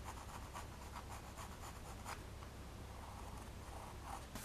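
Pencil drawing on stretched canvas: faint, short scratchy strokes, several a second.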